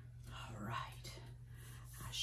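A woman's brief whisper, from about a quarter of a second to a second in, over a low steady hum.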